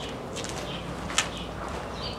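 Steady outdoor background with a few short, high bird chirps, the clearest about a second in.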